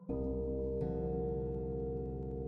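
Background music of sustained, ringing notes: one chord enters at the very start and a new note is struck just under a second in.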